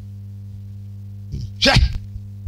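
Steady low electrical hum from a microphone and PA system in a pause between words. A short, sharp breathy syllable into the microphone comes about one and a half seconds in.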